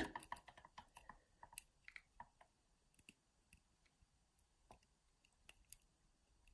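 Faint, irregular metallic ticks and clicks of a hook pick working the pin stack of a brass euro cylinder lock held under tension, clustered in the first two seconds and then only a few scattered ticks.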